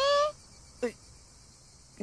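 Faint, steady chirring of insects in the background, after a girl's voice finishes a line at the start.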